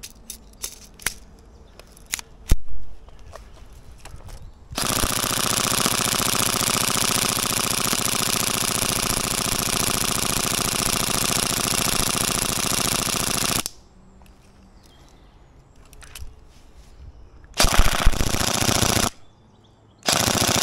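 Tokyo Marui MP5SD NGRS airsoft electric gun firing on full auto from a wound high-capacity magazine: one long continuous burst of about nine seconds, then after a pause of about four seconds a second burst of about a second and a half. Before the firing, a few sharp handling clicks from the gun and magazine.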